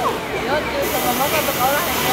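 Steady hiss of fountain water spray, with many voices of onlookers chattering over it.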